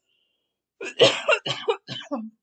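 A woman coughing, a quick run of several coughs starting nearly a second in.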